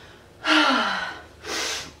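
A woman's heavy sigh, a breathy exhale with her voice falling in pitch, followed by a second, shorter audible breath near the end.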